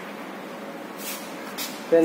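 Handling noise at a laboratory weighing balance: two brief scraping sounds about a second apart over steady room hiss, then a man's voice starts at the very end.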